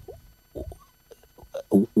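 A pause in a man's speech filled with a few faint, short vocal sounds and mouth clicks. He starts talking again right at the end.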